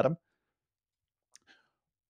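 A man's voice ends on one word, then near silence broken by two faint mouth clicks close to the microphone, about a second and a half in.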